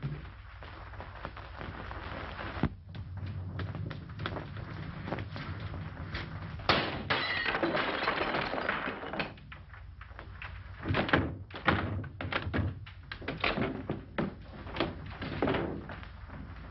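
A forced entry into a house: a sharp thud, then a long crash of breaking about seven seconds in, followed by a run of knocks and footsteps near the end. Everything lies over the steady hiss and hum of an old film soundtrack.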